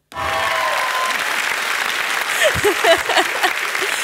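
Applause that starts all at once and keeps going, with a last held note of the song dying away in the first second. Voices calling out over the clapping in the second half.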